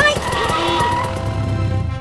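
Cartoon motorcycle with sidecar pulling up, its low engine rumble growing louder and then stopping near the end, over background music.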